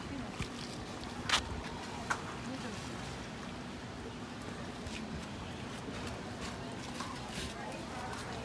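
Outdoor background by a lagoon: a steady wash of noise with faint voices and a low steady hum, broken by a few short sharp clicks.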